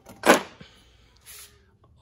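A cardboard sheet pulled out of a plastic socket-bit case: one short, loud swish about a quarter second in, then a softer swish about a second later and a small click near the end.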